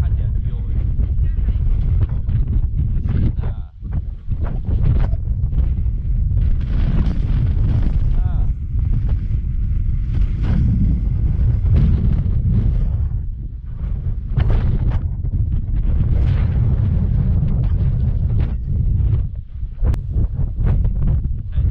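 Strong wind buffeting the camera microphone: a loud, gusty low rumble that swells and drops, with a brief lull about four seconds in.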